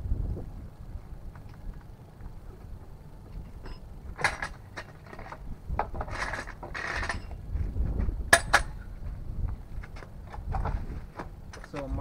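Metal clicks, knocks and rattles from a Goodyear 2-ton hydraulic trolley jack being handled and pulled out from under a car, with two sharp clicks about two-thirds of the way through, over a steady low rumble.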